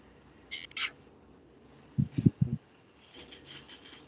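Rustling and scraping with a few low bumps, like something being handled close to an open microphone on a video call. A short rustle comes about half a second in, a quick cluster of bumps around two seconds, and a run of scratchy rustles near the end.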